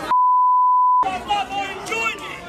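A single steady mid-pitched censor bleep, about a second long, with all other sound cut out beneath it: an expletive bleeped out. Shouting voices come back straight after it.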